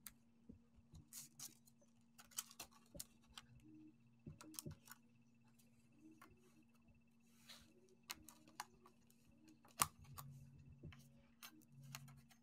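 Near silence, with scattered faint clicks and taps of metal circle cutting dies, their plastic sleeve and cardstock being handled on a cutting mat, over a faint steady hum.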